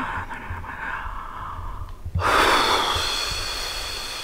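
A woman breathing while reading silently: soft breath noise, then a loud, long exhale starting about two seconds in and fading slowly.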